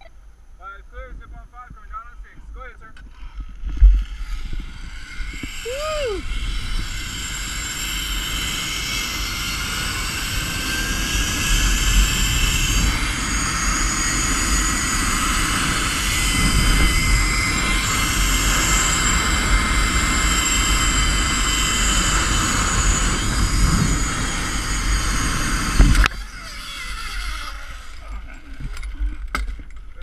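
Zipline trolley pulleys running along the steel cable during a ride: a jolt about four seconds in, then a loud, steady rushing whir with a slowly rising whine through the middle. It stops abruptly with a knock about 26 seconds in as the trolley reaches the end of the line.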